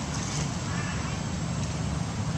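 Indistinct background voices over a steady low rumble and hiss.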